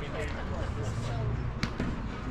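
A single sharp crack of a paddle striking the ball about one and a half seconds in, over faint players' voices.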